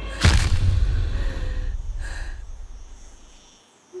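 A single deep boom about a quarter of a second in, the kind of impact hit used in film trailers, followed by a low rumble that fades away over the next three seconds.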